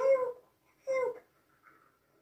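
Two short, high-pitched vocal sounds about a second apart, then near quiet.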